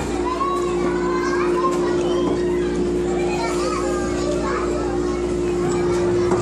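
Children playing: many children's voices chattering and calling, with a steady hum underneath.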